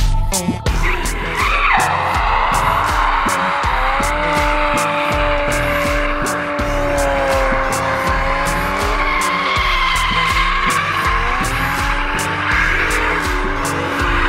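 Drift cars' tyres squealing in a long, wavering screech as they slide through a corner, with engines running hard beneath, starting about a second in. Background music with a steady beat plays under it.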